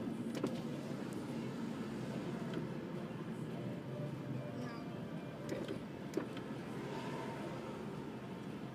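Inside a car's cabin: a steady low rumble from the car as it waits in a queue of traffic, with a couple of light clicks.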